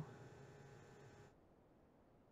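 Near silence: faint room tone that drops to complete silence about a second and a half in.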